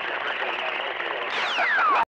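CB radio receiver on channel 28 (27.285 MHz) hissing with static and faint, garbled distant voices. About 1.3 s in, a stronger signal breaks in with a whistle falling steadily in pitch, then the sound cuts off.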